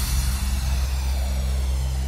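Sustained low synth bass drone with a hissing, slowly sweeping noise over it and no beat: a transition effect in an electronic bounce dance mix.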